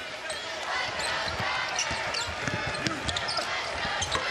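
A basketball being dribbled on a hardwood court, with repeated short bounces, over arena crowd noise. Brief, high sneaker squeaks come from the players.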